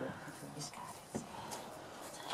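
Faint, low murmur of people's voices, with a single sharp click a little over a second in.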